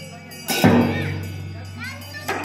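Slow ritual percussion accompanying a masked dance: one loud stroke about half a second in that rings on with a low hum and slowly fades.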